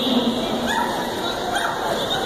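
A dog gives two short high-pitched cries, about a second apart, over the steady hubbub of voices in a large hall.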